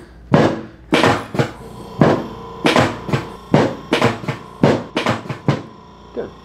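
Chiropractic drop table's raised pelvic section knocking down again and again as the patient's sacrum is pushed on: about a dozen sharp knocks, roughly two a second. This is a drop-table adjustment aimed at a compressed L5–S1 disc.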